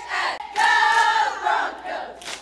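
A cheerleading squad shouting a cheer in unison: a short call, then a long drawn-out syllable held for about a second, then a shorter one near the end.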